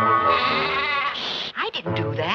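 Sheep bleating: a long quavering bleat, then shorter calls near the end, while the last notes of a music cue fade out at the start.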